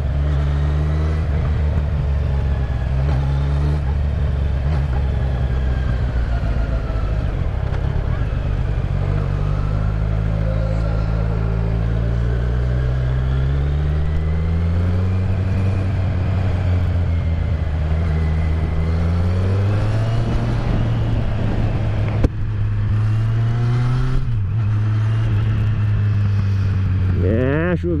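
Kawasaki Z900 inline-four engine running at city speeds with its rear exhaust tip removed, leaving only the pre-muffler box open. Its pitch climbs slowly over about ten seconds, dips, then climbs again, and a single sharp crack comes about two-thirds of the way through.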